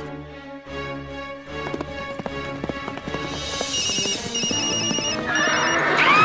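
Cartoon horse galloping with steady clip-clop hoofbeats over background music. From a little past halfway a phone beeps in a run of short, evenly spaced electronic tones, and right at the end the horse lets out a loud whinny as it balks at the jump.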